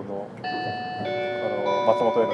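Electronic chime melody: bell-like held notes entering one after another, a new note about every half second, each ringing on under the next, with a voice speaking over the start.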